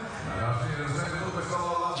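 Speech: a man talking, with no other clear sound standing out.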